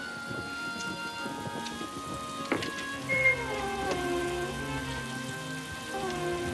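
Steady rain with sustained, held music chords. About two and a half seconds in there is a click, then a long creak falling in pitch as a heavy old door swings open, and a shorter creak near the end.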